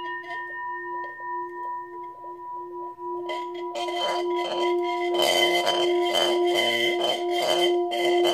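Brass Tibetan-style singing bowl sung by a leather-covered mallet run around its rim, holding a steady ringing tone that pulses in level. From about three seconds in, a rose quartz sphere sitting inside the bowl rattles against the metal in quick repeated clicks, growing louder toward the end.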